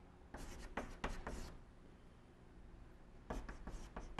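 Chalk writing on a blackboard: a quick run of short scratching strokes starting about a third of a second in and lasting about a second, then another run near the end.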